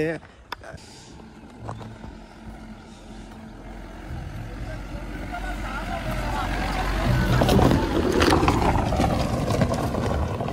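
A small hatchback car driving up a dirt track toward the listener. Its engine hum and the noise of its tyres on gravel grow steadily louder and are loudest about three-quarters of the way through.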